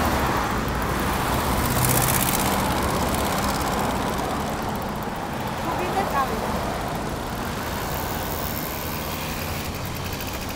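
Street traffic noise: a steady wash of passing cars.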